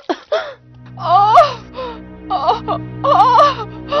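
A wailing, lamenting voice with pitch that bends up and down, heard in several phrases over a sustained low drone of dramatic background music that sets in just under a second in.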